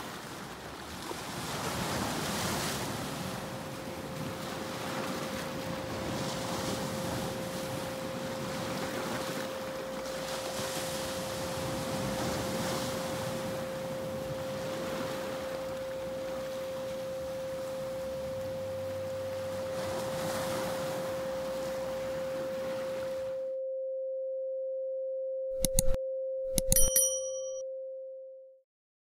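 Surf washing over shoreline rocks, rising and falling in swells every few seconds, with a steady pure tone held underneath. The surf stops about 23 seconds in and the tone carries on. Near the end come a click and a short bell-like ding, typical of an animated subscribe-button sound effect.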